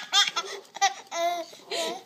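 Baby laughing hysterically: a quick run of short laugh bursts in the first second, then two longer drawn-out calls.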